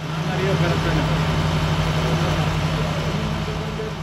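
A fire engine's motor running steadily, a constant low hum over a wash of noise, with faint voices in the background.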